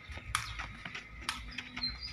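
Sepak takraw ball kicked back and forth: two sharp knocks about a second apart, with a few fainter ticks between them.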